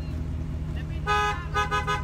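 Car horn honking: one short toot about a second in, then a few quick toots right after, over a steady low rumble of traffic.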